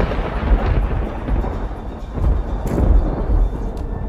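A loud, deep thunder-like rumble, swelling again a couple of times and cutting off abruptly at the end: a horror-film sound effect laid over the score.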